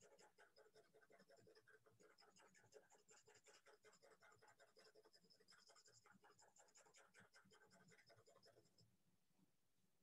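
Faint, quick, repeated shading strokes of a drawing tool scratching across paper, stopping about nine seconds in.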